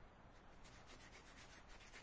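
Faint scratching of a nearly dry paintbrush dragged in quick short strokes across rough cold-press watercolor paper (dry-brush technique).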